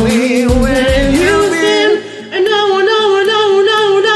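A woman sings a karaoke duet over a pop backing track, holding long, wavering notes without clear words. The line breaks off briefly near the middle and a new held note begins.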